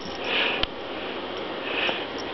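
Two short breathy sniffs, about a second and a half apart, with a light tap just after the first.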